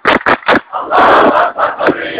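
A large protest crowd chanting in unison, over a run of sharp rhythmic handclaps. About a second in, the chant swells into one long shouted line.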